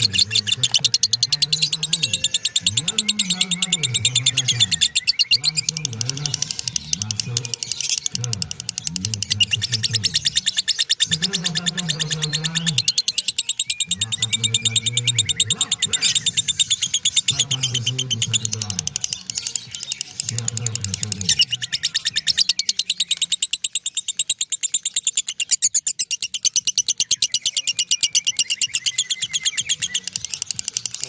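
Masked lovebird giving its 'ngekek': a long, unbroken run of very rapid, high chattering notes. A low human voice sounds underneath until about two-thirds of the way through.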